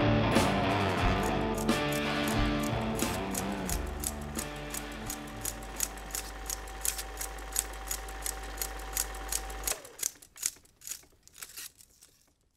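The song's last guitar chords fade out over the first few seconds. They give way to a film projector running: a steady low hum with a regular mechanical clicking, about three clicks a second. Near the end the hum cuts off suddenly, leaving a few scattered clicks as the projector stops.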